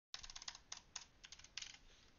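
Computer keyboard typing: a quick run of keystrokes in short bunches that thin out toward the end.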